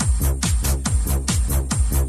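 Electronic dance track with a steady four-on-the-floor kick drum at about two beats a second, hi-hats on the offbeats and a sustained deep bass line; no vocals in this stretch.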